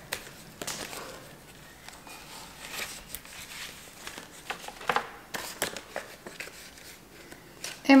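Large fatsia leaves rustling as they are handled and their stems pushed into the sides of a block of wet floral foam: scattered soft crinkles and taps.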